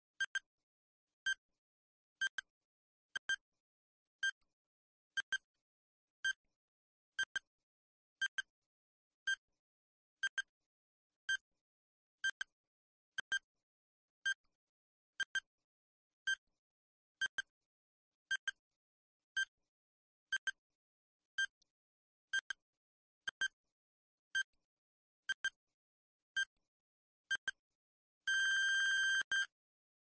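Quiz countdown timer sound effect: short high electronic ticks about once a second, some doubled, as the 30-second answer time counts down. Near the end comes one longer beep of about a second, marking time up.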